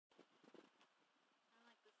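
Near silence, with faint scattered rustles and a brief, faint voice-like sound near the end.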